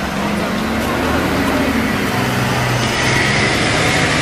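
City street traffic at close range: a vehicle engine running loudly nearby, its pitch shifting, over a steady din of traffic and crowd hubbub.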